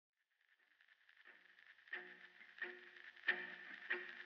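The song's intro fading in from silence: plucked guitar notes, about one every two-thirds of a second, getting louder, over a faint hiss.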